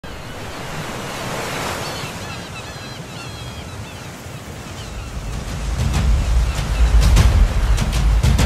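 Sea waves washing on the shore, with a few short bird calls about two to four seconds in. About five and a half seconds in, the song's intro music comes in with deep bass and drum hits and grows louder.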